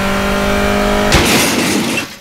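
Sci-fi spaceship engine sound effect: a steady engine-like whine with several overtones. About a second in it gives way to a loud rushing blast that starts to die away near the end.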